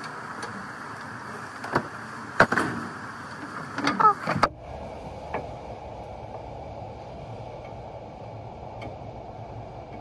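Steady warehouse background noise with a few sharp knocks and clatters close to the microphone, as the cart and things on it are handled, and some short squeaks just before the background drops abruptly to a lower, quieter hum about four and a half seconds in.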